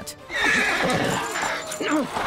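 A horse whinnying in panic as walkers overwhelm it, over a loud, jumbled commotion.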